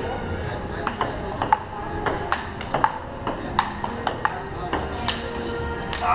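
Table tennis rally: a celluloid-type ball being hit back and forth, clicking off the bats and bouncing on an outdoor table tennis table, a steady run of sharp clicks about two a second.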